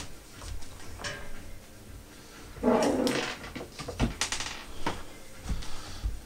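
A dog gives two short cries in the background, a lower one about three seconds in and a higher one about a second later, among scattered light clicks of handling.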